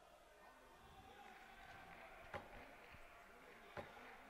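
Near silence: faint arena room tone with distant, indistinct voices, broken by two sharp knocks about two and a half seconds in and just before the end.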